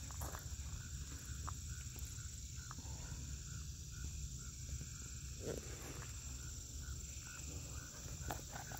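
Evening insect chorus of crickets: a steady high-pitched trill with a fainter chirp repeating about two to three times a second, over a low outdoor rumble.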